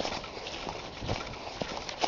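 Footsteps crunching and rustling through dry fallen leaves on a forest path, about two steps a second.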